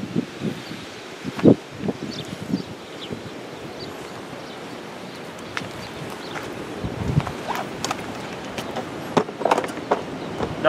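Irregular metal knocks and clanks from a rail draisine's hand-worked lever mechanism being operated. The loudest knock comes about a second and a half in, and a quick run of knocks comes near the end, over a steady outdoor noise bed.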